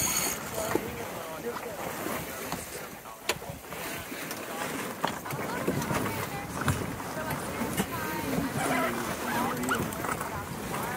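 Indistinct talk from the sailboat's crew over a steady rush of water and wind. A few sharp clicks cut through, the strongest about three seconds in.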